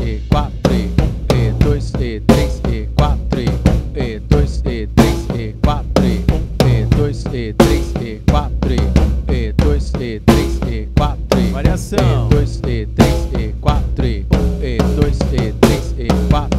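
Drum kit playing a tribal groove with triplet variation figures: a steady, dense run of drum strokes with bass drum underneath, at a moderate tempo.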